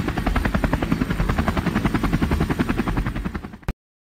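Helicopter sound effect: a fast, even rotor chop that fades away and then cuts off to silence shortly before the end.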